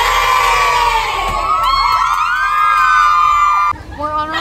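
A group of teenage girls cheering and screaming together inside a school bus, many voices at once, with held, gliding shouts that cut off suddenly near the end.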